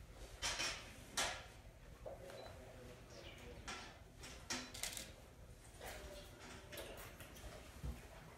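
A series of short, soft mouth sounds of wine tasting: red wine being sipped, slurped with air drawn through it, and spat out, several times about a second apart.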